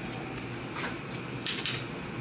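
Commuter train cabin running with a steady rumble. About one and a half seconds in, a quick run of sharp clicks: a conductor's ticket punch.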